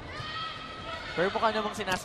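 A commentator laughing in short pitched bursts about a second in, over the faint hum of a broadcast mix.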